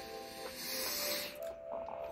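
A person taking one long sniff, heard as a steady hiss lasting about a second, over soft background music with held notes.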